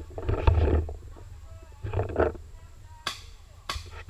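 Two loud, rough bursts with a deep rumble, then two sharp paintball shots about half a second apart near the end.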